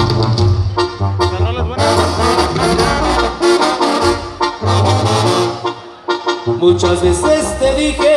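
Live Mexican banda music: trumpets and trombones playing over a pulsing low bass line, with a brief lull about six seconds in.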